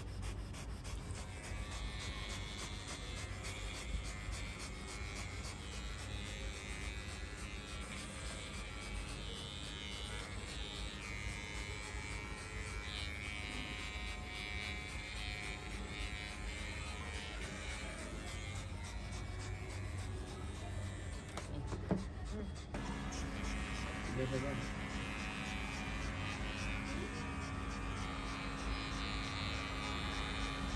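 Electric dog-grooming clipper running steadily while shaving a Lhasa Apso's coat. The hum changes abruptly about two-thirds of the way through, to a steadier tone.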